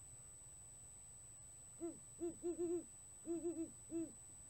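Great horned owl hooting: a run of deep, short hoots starting about two seconds in, in two rhythmic phrases of several notes each with a brief gap between them.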